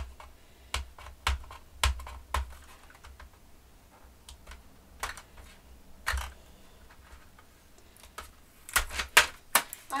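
A metal tin of coloured pencils being handled, giving scattered light clicks and knocks of tin and pencils, with a quick run of clicks near the end.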